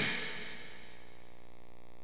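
Steady background hiss and faint hum from the recording chain, with no speech: the room and microphone noise floor. The tail of a louder sound fades out in the first half second.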